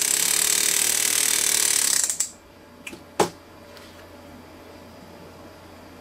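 Flex-shaft hammer handpiece running steadily against a ring's channel setting, tapping the metal down to tighten the diamonds; it stops about two seconds in. One sharp click follows about a second later.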